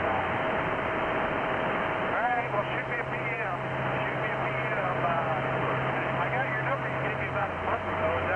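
CB radio receiving a weak transmission: a steady hiss of static with a constant whistle through it and a faint voice buried in the noise from about two seconds in.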